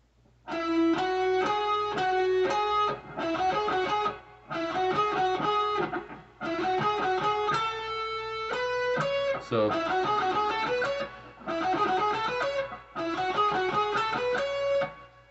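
Electric guitar playing a lead solo passage: quick runs of notes in phrases a second or two long with short breaks between them, some notes held. Descending and then rising runs come in the second half.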